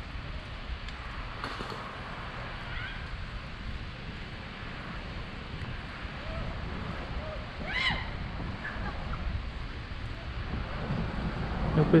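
Wind rumbling on the microphone of a camera carried on a moving bicycle, with faint distant voices. A short rising high call stands out about eight seconds in.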